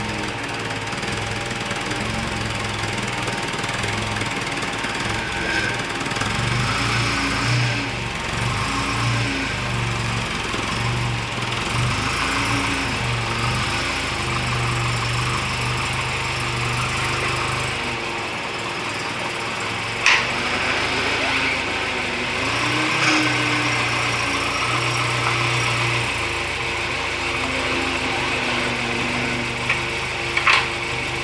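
A Volvo 240's engine running on a temporary fuel feed, first start after a long lay-up, as the car rolls slowly forward, with background music over it. Two sharp clicks come about two-thirds of the way through.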